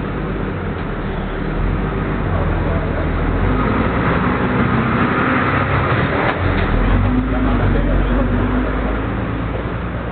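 A city bus's engine running as the bus drives slowly past close by, growing louder to a peak about two-thirds of the way through and then easing off, with a rushing noise as it goes by.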